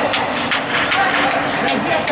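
Indistinct shouting voices echoing in an indoor sports hall, over a steady low hum, with scattered short knocks and clicks.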